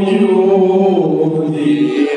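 Sholawat, an Islamic devotional chant in praise of the Prophet, sung by a man into a handheld microphone in long held notes that slide slowly in pitch.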